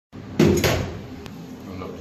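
A sudden knock about half a second in, struck twice and fading over about a second, then a single faint click.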